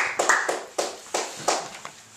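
Applause from a small audience dying away. Dense clapping thins to a few single claps about a third of a second apart and fades out.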